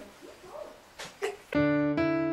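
Faint room noise with a couple of soft knocks, then about one and a half seconds in, electric-piano-style keyboard music starts suddenly with sustained notes.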